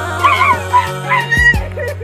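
A woman's high, wavering cries and yelps over background music with sustained low chords.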